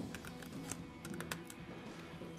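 Soft background music under a few light clicks and taps from a man's footsteps and movement as he walks in and sits down on a stool.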